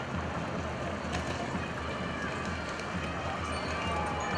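Airport terminal hall ambience: indistinct background voices over a low steady hum, with the rumble and clicks of a luggage trolley and wheeled suitcases rolling across the hard floor.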